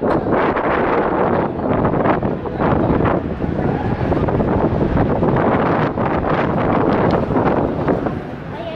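Wind buffeting a handheld camera's microphone outdoors: a loud, uneven noise that swells and dips in gusts.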